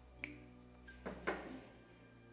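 Sharp clicks of a hand working at a wooden door: one about a quarter second in, then two close together just after a second in, over a low steady hum.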